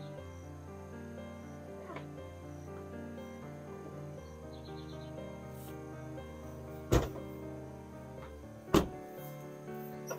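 Soft background music with long held notes, over which car doors are slammed shut twice, less than two seconds apart, near the end.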